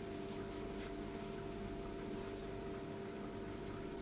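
Quiet room tone with a steady low hum; the soft bread being torn apart makes no clear sound.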